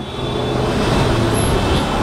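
Steady background rumble with hiss, swelling a little about a second in, like road traffic or a running machine.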